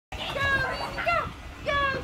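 High-pitched voices calling out in three drawn-out, sing-song calls with no clear words, each rising at the start and then held.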